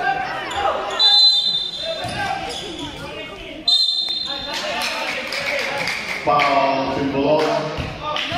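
Referee's whistle blown twice in short, shrill blasts, about a second in and again near four seconds, in an echoing gym, with a basketball bouncing on the hardwood-style court and players' voices around it.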